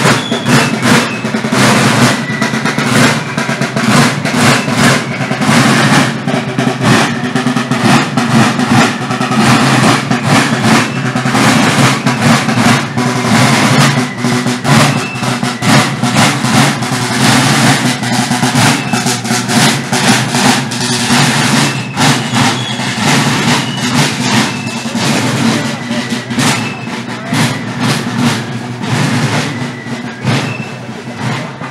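A corps of marching drums playing a folkloric march beat together, with dense, rapid strokes and rolls.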